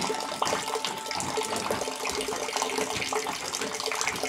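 Grape juice pouring in a thin stream from a wooden press spout and splashing steadily into a vessel below.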